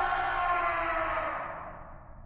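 A shriek sound effect of an inhuman creature, its pitch slowly sliding down as it fades away toward the end.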